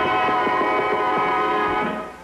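Cartoon background music holding one sustained chord, steady throughout and fading right at the end.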